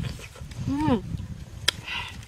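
A woman eating a Burmese grape: mouth and chewing noises with a short voiced hum about halfway through that rises and falls in pitch, and a sharp click near the end.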